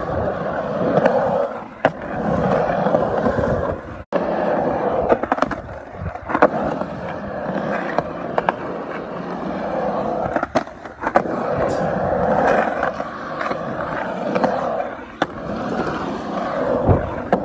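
Skateboard wheels rolling over concrete: a steady rolling rumble with scattered sharp clicks as the wheels cross cracks and expansion joints in the slab. The sound cuts out for an instant about four seconds in.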